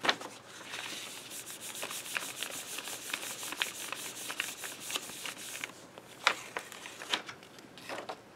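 A hand rubs briskly back and forth over a sheet of paper laid on a paint-covered stencil, pressing the paper down to take up the paint. The rubbing stops at about six seconds. A sharp paper crackle comes at the start and two more come near the end as the paper is handled.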